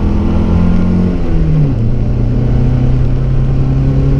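Chevrolet Omega Suprema's engine running under throttle, heard from inside the cabin. Its note rises a little, drops sharply about one and a half seconds in, then holds steady at a lower pitch.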